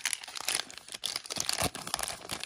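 Crinkling and rustling of a printed paper wrapper as hands unfold it to open a toy surprise, a dense run of quick, irregular crackles.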